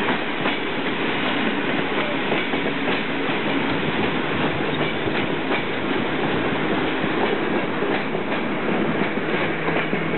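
Steady rolling rumble of a moving train's wheels on the rails, with irregular sharp clacks over rail joints and points.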